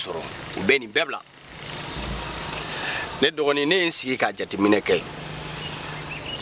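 Crickets chirring: a high, continuous trill with a fast, even pulse, running steadily under a man's voice.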